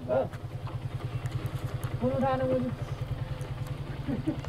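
Motorcycle engine idling with a steady, fast, even low pulse. A short voice is heard about two seconds in.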